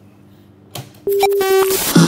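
A recorded song starts playing after a short quiet: one steady held note for under a second, then the music comes in near the end.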